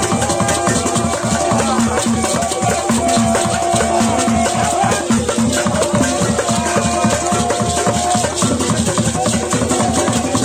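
Traditional Igbo festival percussion: drums and rattles playing a dense, steady rhythm, with long held high notes above it.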